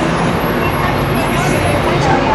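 City street traffic noise with a steady low engine hum, and people's voices in the background.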